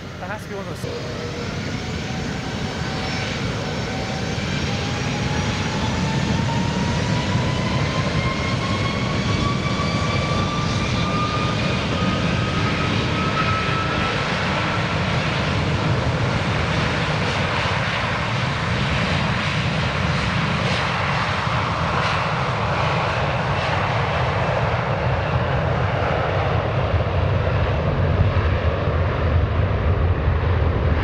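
Airbus A330-200 jet engines spooling up: a whine that rises steadily in pitch over the first fifteen seconds under a growing roar, which then holds steady and loud.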